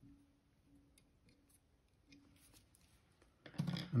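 Faint, scattered scratching clicks of a small brush being worked through the squirrel-hair collar of a fly-tying nymph held in the vise, teasing the fibres out so the collar stands leggy. A faint low hum comes and goes underneath.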